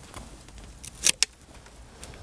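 Hand pruning shears cutting a peach shoot: a sharp snip about a second in, with a couple of lighter clicks around it.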